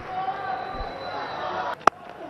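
Low murmur of a stadium crowd, then a single sharp crack near the end: a cricket bat striking the ball.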